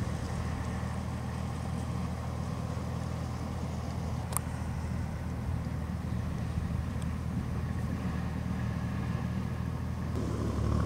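Steady low rumble of road traffic, with one sharp click about four seconds in.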